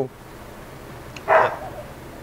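A small dog gives a single short bark partway through, over a low background.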